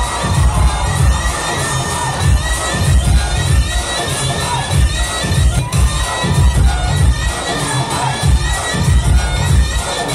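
Loud DJ music from an outdoor sound system of one bass speaker and two top speakers, its heavy bass beat repeating steadily, with a crowd of dancers shouting and cheering over it.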